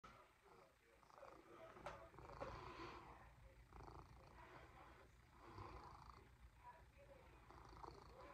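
A domestic cat purring faintly and steadily, with a couple of faint clicks about two seconds in.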